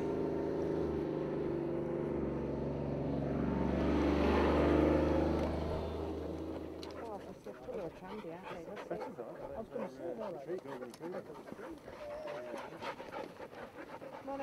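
A utility vehicle's engine running steadily with a low hum, swelling about four seconds in, then stopping or fading out at about seven and a half seconds. After that, dogs panting close by, with short high sounds and light clicks.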